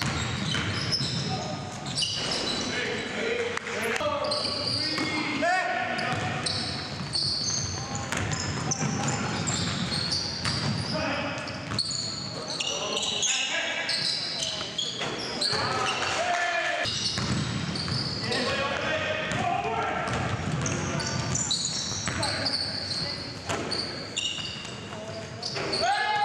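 Live basketball game in a gym: the ball bouncing on the hardwood floor, sneakers squeaking in many short high chirps, and players' voices calling out, all echoing in the hall.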